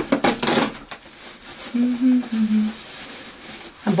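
Paper and cardboard rustling and crinkling as a wrapped item is dug out of a cardboard advent-calendar compartment packed with shredded paper, busiest in the first second, then lighter handling.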